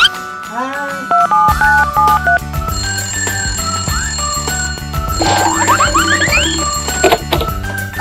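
Playful background music with a stepped melody, over which a toy telephone rings with an electronic tone and a few rising chirps.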